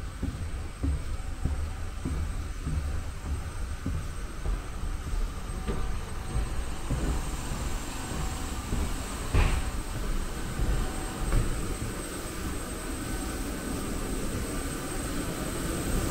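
Footsteps and a low, uneven rumble from walking down an airport jet bridge, with a louder thump about nine seconds in over a faint steady high whine.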